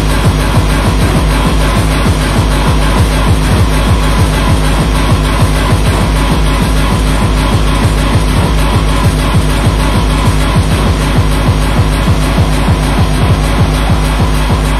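Techno playing in a DJ's vinyl mix: a loud, fast, steady kick-drum beat under dense electronic sound.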